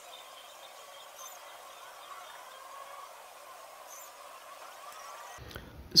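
Faint background ambience, thin and hissy, with a few faint high chirps about a second in and again about four seconds in.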